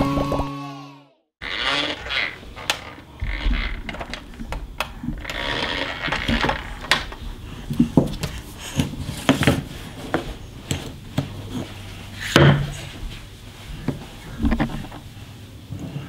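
Wooden stacker rings and peg knocked and clattered on a tabletop by a toddler's hands: irregular light knocks and clicks, with one louder knock about three-quarters of the way through.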